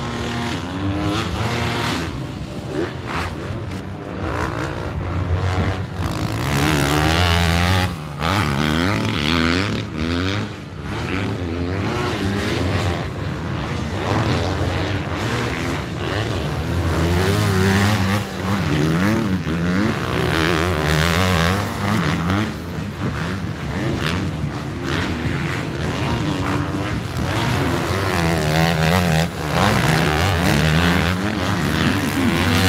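Motocross race bikes' engines revving up and down repeatedly as several bikes brake into and accelerate out of a dirt corner, one passing after another.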